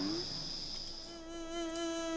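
A small carved bison whistle from the cartoon's soundtrack blown, giving a thin, high, steady whistle tone that stops about a second in. A lower held note with overtones follows.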